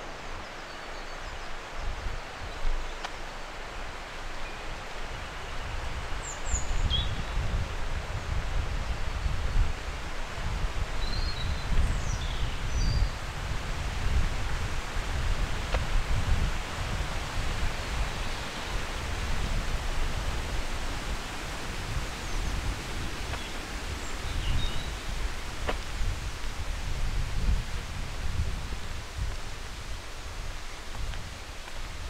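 Outdoor woodland ambience: a steady rushing noise with gusty wind buffeting the microphone, heavier from about five seconds in. A few short bird chirps come through, twice in the first half and once near the end.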